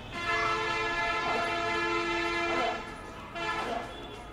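A horn sounding one long, steady chord for about two and a half seconds, then stopping.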